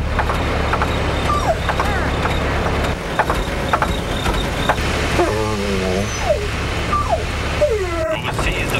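Bus engine running with a steady low rumble, with several short falling squeaks and a wavering, voice-like call about five seconds in.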